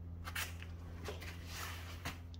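A steady low background hum, with a few faint rustles and light clicks over it.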